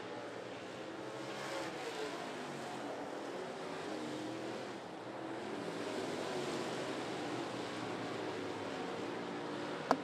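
Dirt-track race car engines running on the oval, their pitch rising and falling as the cars lift and get back on the throttle through the turns, over a steady wash of track noise. One sharp click just before the end.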